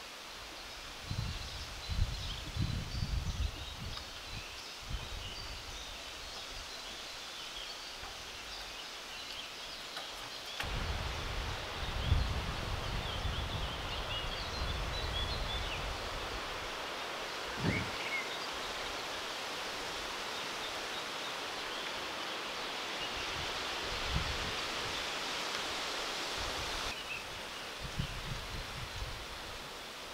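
Outdoor ambience of a grassy clearing: wind gusting on the microphone and rustling the grass and leaves, strongest near the start and again about a third of the way in, with small birds chirping throughout. A single short thump comes a little past the middle.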